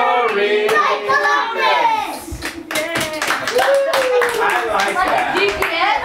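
A small group of people clapping, with several voices talking and calling out over the applause.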